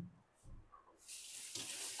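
Water running from a kitchen tap, an even hiss that starts abruptly about a second in, after a soft thump at the start.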